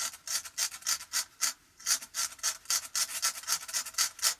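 A tool scratching into painted watercolour paper in quick repeated short strokes, about four or five a second with a brief pause part-way, lifting crisp white whisker lines out of the paint.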